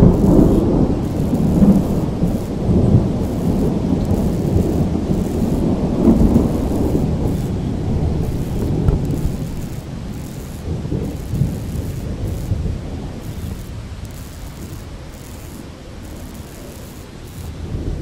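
Thunder rolling in a long, loud rumble that swells again a few times and then slowly dies away, with rain falling beneath it.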